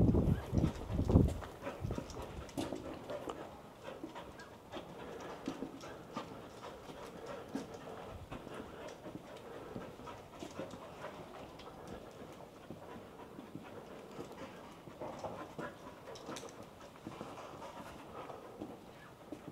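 A dog panting as it trots over cobblestones, with faint ticking footsteps and claws on the stone. A few louder low rumbles in the first second or so.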